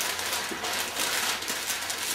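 Sheets of packing paper rustling and crinkling continuously as they are folded around a small glass decanter lid by hand, with a few sharper crackles.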